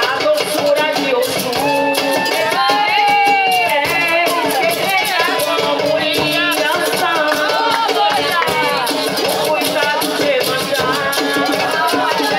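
Live music: a woman singing with a shaker keeping a steady rhythm behind her.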